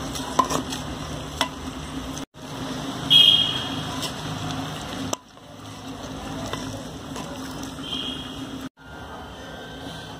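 Wooden spoon stirring and scraping a thick mix of mutton, onion, yogurt and spices in a clay handi, with a few light knocks against the pot. The sound breaks off briefly three times.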